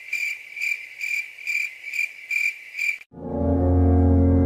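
Cricket chirping sound effect, a high chirp repeating about twice a second, cutting off abruptly about three seconds in. A loud, deep drone then starts.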